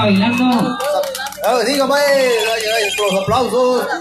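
Speech: an animated voice talking through the party sound system's microphone, while a steady low tone from the sound system fades out within the first second.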